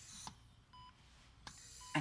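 Hospital patient monitor beeping about once a second, a short steady tone each time.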